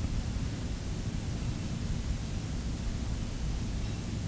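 Steady hiss with a low rumble underneath: room tone with no distinct event.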